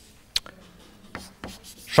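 Chalk on a blackboard: a sharp tap about a third of a second in, then a few faint short strokes as the chalk is drawn across the board.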